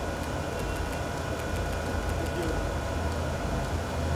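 Steady low hum and murmur of a crowded red-carpet venue, with scattered faint clicks of press photographers' camera shutters.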